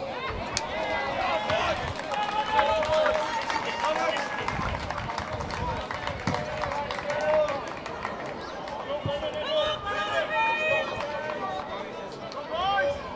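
Players and spectators shouting and calling across a rugby pitch: several overlapping voices, none clearly worded.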